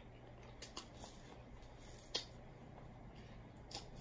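Faint, scattered small clicks and light rustles of eating: chewing with the mouth closed, and a paper napkin being handled near the end. A low steady room hum runs underneath.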